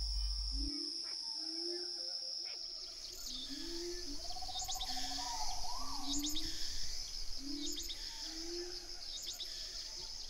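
Tropical rainforest animal chorus: a steady high-pitched insect drone, short low rising calls repeated roughly once a second, a brief trill midway, and high bird chirps joining from about three seconds in.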